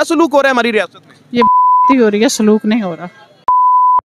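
Two censor bleeps: a steady tone near 1 kHz, about half a second each, laid over a woman's spoken answer and blanking out her words. One comes about a second and a half in, the other near the end, stopping abruptly.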